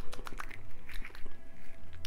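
Mouth sounds of someone tasting a sugar lip scrub on her lips: lips smacking and small wet clicks, several a second, over a steady low hum.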